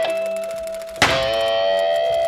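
Single guitar notes plucked and left to ring, a new note struck about a second in.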